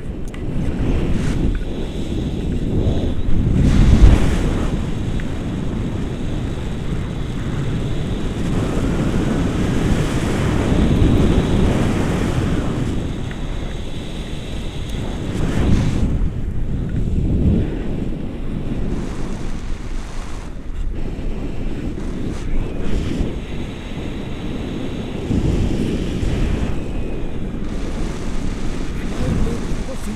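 Wind from a paraglider's flight buffeting the pole-mounted camera's microphone: a loud, low rushing that swells and eases in gusts, strongest about four seconds in.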